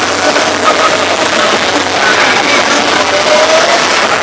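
Loud live music from the stage blended with the dense noise of a packed crowd, voices rising and falling through it.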